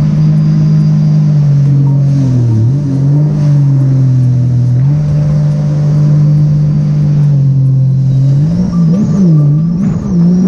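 Supercharged three-cylinder engine of a Sea-Doo RXT-X 300 personal watercraft fitted with an aftermarket free-flow exhaust, running steadily at cruising speed. Its pitch dips briefly about two and a half seconds in, and rises and falls several times near the end as the throttle is eased and reapplied.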